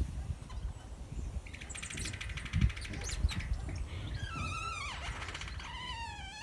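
Birds chirping and singing: a rapid chattering trill about a second and a half in, then wavering whistled phrases near the end, over a low rumble.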